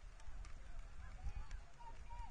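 Wind rumbling on the microphone over an open sports field, with faint distant calls rising and falling in pitch above it.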